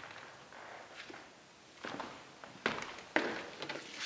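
Footsteps of a man walking a few paces: about half a dozen uneven footfalls and scuffs, louder in the second half.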